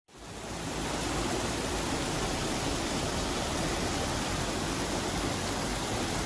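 Water rushing steadily as it spills over the weirs of a water-treatment basin, fading in at the start.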